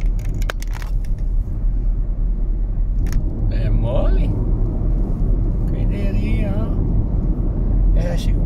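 Car cabin noise while driving at highway speed: a steady low rumble of tyres and engine. A few short clicks come in the first second, and voices in the car break in briefly around the middle.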